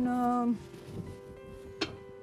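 Soft background music with steady held notes. At the start a woman's voice trails into a drawn-out hesitation sound. About two seconds in there is one sharp clink as the lid of a pot is taken hold of.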